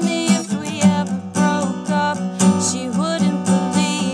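Steel-string acoustic guitar strummed in a steady, unhurried rhythm of about two strums a second, with a woman's voice singing a melody over it.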